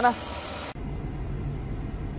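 Renault Kwid's three-cylinder petrol engine idling after an overhaul, a steady low hum that is described as very silent. Under a second in, the sound changes abruptly to the same idle heard from inside the car.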